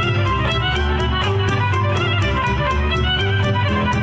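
Romanian folk dance music playing, a wavering melody line over a steady, quick beat.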